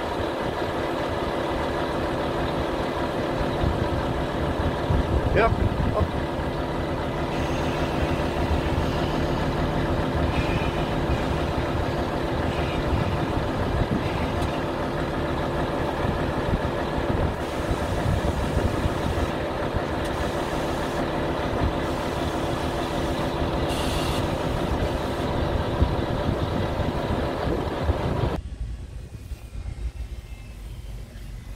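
Volvo FH 500 truck's 13-litre straight-six diesel idling steadily, with a brief rising whistle about five seconds in. The engine sound cuts off sharply near the end.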